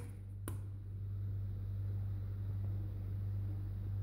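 A steady low hum, with a single faint tap about half a second in, as a hard-boiled egg is knocked on the table to crack its shell.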